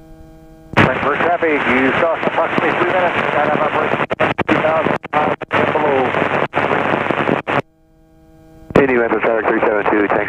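Voice radio traffic over the helicopter's headset intercom. It is a narrow, noisy voice with several brief dropouts; it starts about a second in, breaks off near eight seconds and comes back about a second later. Between transmissions there is a steady hum.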